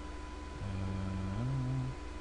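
A man's low hummed "mm", held on one note and then stepping up to a higher note before it stops. It sits over the recording's steady electrical hum and faint high whine.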